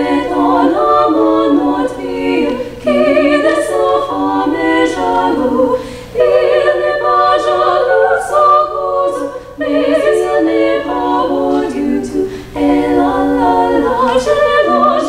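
Girls' vocal trio singing a cappella, three female voices in harmony, in phrases with brief breaks between them.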